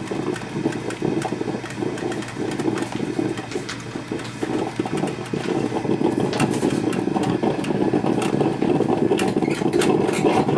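Black & Decker thermal carafe drip coffee maker brewing: a steady, rough bubbling and sputtering from its water heater, with scattered crackles and pops. It grows louder about six seconds in.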